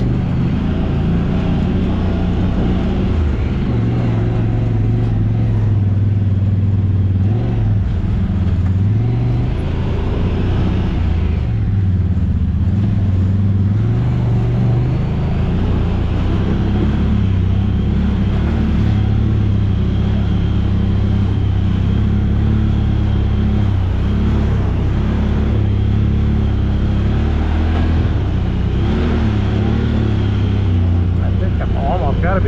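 Honda Talon X side-by-side's parallel-twin engine running as it drives along a dirt trail, its pitch rising and falling with the throttle.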